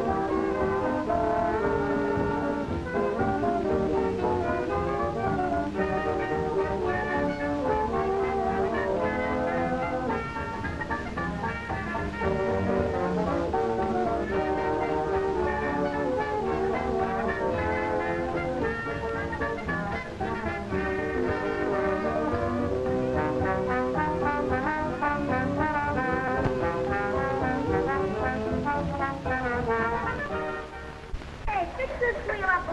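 Orchestral title music from an early-1930s film soundtrack, with brass to the fore, playing a moving melody at a steady level.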